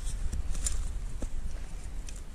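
A steady low rumble on the microphone with a few faint clicks as a hand handles a sprung wire cable snare and its lock in the snow.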